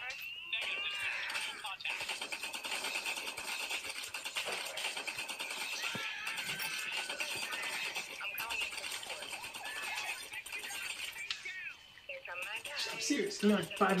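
Video game audio playing on a screen: a dense, steady mix of game sound effects with clicks, pitched tones, music and voices. It dips briefly near the end.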